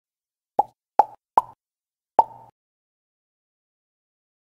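Four short, sharp pops, each with a brief ring: three in quick succession, then a fourth after a pause that rings slightly longer.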